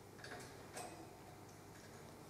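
Near silence with a couple of faint, sharp clicks in the first second, then only low room hiss.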